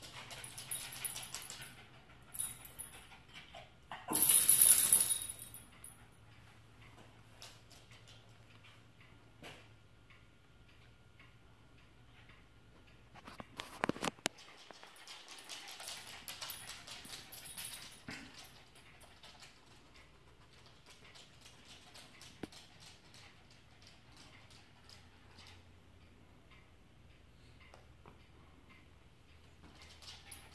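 Small dog moving about on a hardwood floor in short bursts: claws clicking and scuffling, loudest about four seconds in and again around fifteen to eighteen seconds, with quiet stretches between.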